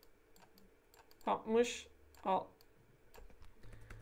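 Faint, scattered clicks and taps of computer input while working on a digital whiteboard, coming quicker near the end, broken by a short muttered word or two in the middle.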